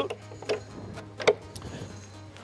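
Two faint clicks just under a second apart from a fibreglass deck locker hatch being handled and unlatched, over quiet background music.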